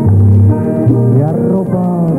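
Orchestra playing the accompaniment of a slow romantic song, a melody line over bass notes that change about every half second, between the singer's lines.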